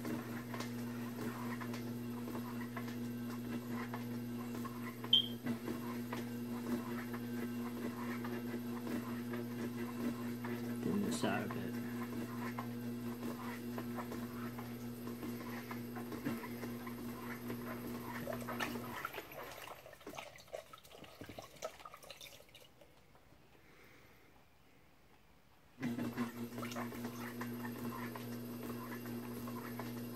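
Electric pottery wheel motor humming steadily under the wet rubbing of hands and a sponge on spinning clay, with a short sharp squeak about five seconds in. The hum cuts off about two-thirds of the way through, and the sound sinks to near quiet for a few seconds before the hum comes back suddenly near the end.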